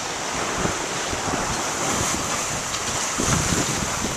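Steady rush of wind on the microphone and water washing along the sides of a sailboat under way, with no voices.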